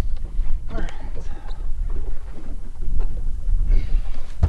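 Wind rumbling on the microphone over choppy water lapping against a boat's hull.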